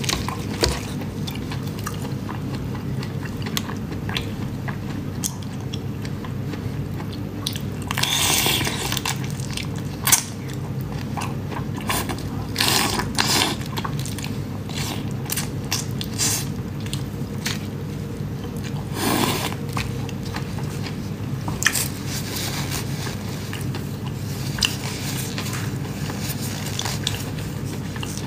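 Close-miked eating of whole marinated shrimp: scattered bites, shell crunches and wet chewing and sucking, over a steady low hum.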